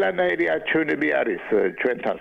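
Speech only: one person talking continuously, the voice cut off above about 4 kHz.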